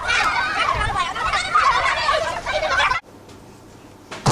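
Turkeys gobbling: a dense run of overlapping warbling gobbles that cuts off abruptly about three seconds in.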